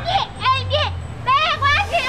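Speech only: a high-pitched voice speaking in short phrases.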